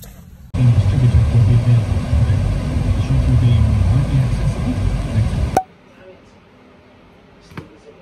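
Low road and engine rumble heard from inside a moving car's cabin, loud and steady. It cuts off suddenly about five and a half seconds in, after which only faint room noise and a few light clicks remain.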